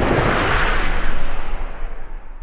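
Whoosh-and-boom transition sound effect: a loud swell of rushing noise over a low rumble, peaking about a second in, then fading away.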